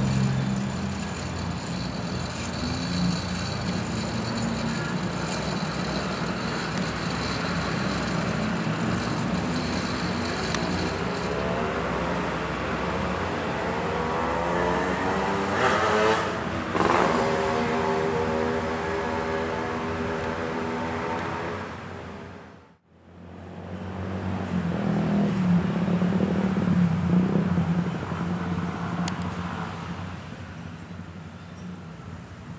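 Motorcycle and other road-vehicle engines passing at a level crossing. About halfway through, one accelerates with a rising pitch. The sound cuts out briefly, then engine noise returns.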